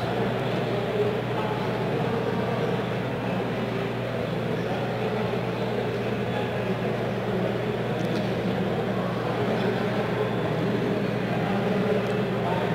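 Steady background noise of a large event hall: a low, even rumble with faint distant voices, and no distinct event.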